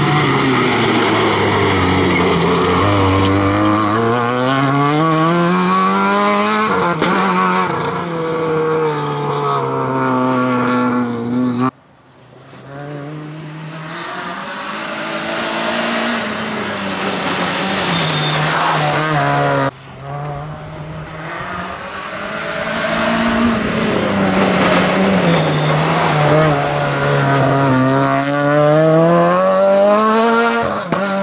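Renault Clio R3 rally car's four-cylinder engine revving hard, its pitch falling and climbing again and again as the car lifts, brakes and accelerates through corners, with a hiss of tyres on loose gravel. The sound cuts off abruptly twice, about 12 and 20 seconds in, then builds back up as the car approaches.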